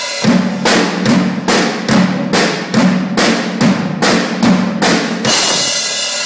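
Acoustic drum kit played hard in a steady pattern of hits, a little over two a second, with the drums ringing under each stroke. It opens with a cymbal crash and ends near the close on a crash held for about a second.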